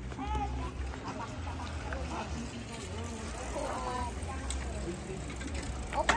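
Faint voices of people talking and calling at a distance, in short scattered snatches over a low steady rumble.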